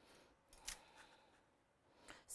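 Near silence, apart from a faint, brief handling sound about two-thirds of a second in, as white cardstock and a metal cutting die are laid on the plate of a die-cutting machine.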